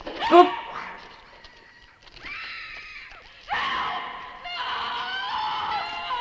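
A woman screaming on an old film soundtrack: a sudden loud cry just after the start, then longer wavering screams.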